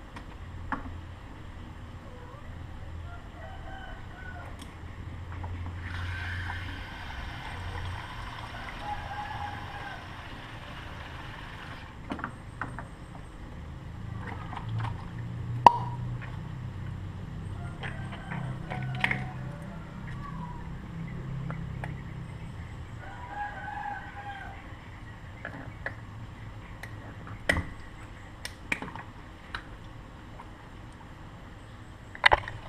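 Kitchen tap running as water fills a rubber balloon at a stainless steel sink, with scattered clicks and knocks from handling.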